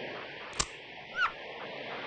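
Beach ambience of steady surf and wind noise, with one sharp click about half a second in and a brief bird call a little after one second.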